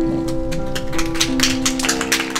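Digital stage piano holding the last sustained chord of the accompaniment as the piece ends. Scattered hand claps start just after it begins and grow thicker into applause.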